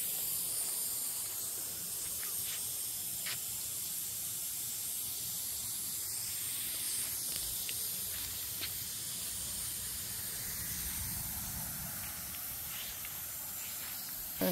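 Pop-up lawn sprinkler spray heads of an automatic in-ground irrigation system spraying water, a steady hiss.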